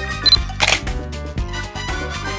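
A short high beep, then a single camera shutter click a little over half a second in, over upbeat background music.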